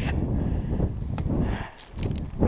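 Low rumbling wind and handling noise on a body-worn camera's microphone as a fallen snowshoer shifts in deep snow, with faint rustles and a click or two, dropping away briefly near the end.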